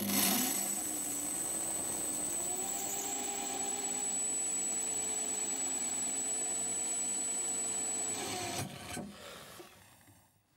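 Handheld electric drill with an ARTU carbide-tipped multi-purpose bit drilling into a ceramic tile, running steadily with a high motor whine. Its pitch rises slightly a couple of seconds in, and it stops about eight and a half seconds in, then winds down.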